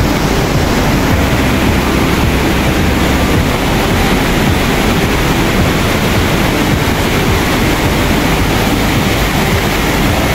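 Astak Nala, a fast mountain stream, rushing over rocks: a loud, steady rush of white water.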